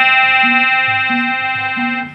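Instrumental stage music: a long held organ-like chord that fades slowly, over a low bass line of two notes taking turns about twice a second.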